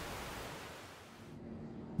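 Faint, even rushing noise with no pitch, sinking to its quietest about a second in and swelling back near the end.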